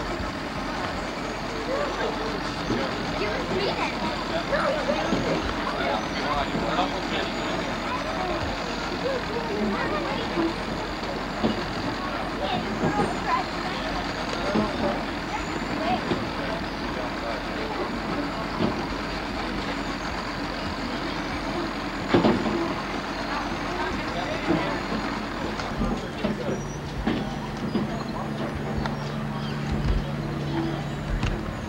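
Several people talking indistinctly over steady outdoor background noise, with a single sharp knock partway through. Near the end a steady low hum starts up.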